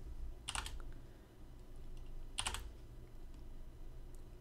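Computer keyboard keys clicking in two short bursts, about half a second in and again about two and a half seconds in, over a low steady hum.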